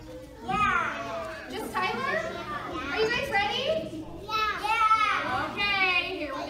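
A group of young children's voices calling out together, high-pitched and rising and falling in bursts, loudest near the end.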